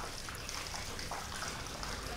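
A faint, steady trickle of running water under a low background hush.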